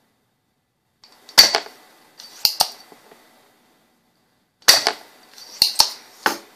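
Spring-loaded desoldering pump snapping and being re-cocked while desoldering an inductor from a switching power supply board: a series of sharp snaps and clicks, the loudest about a second and a half in, then two close together, and another cluster near the end.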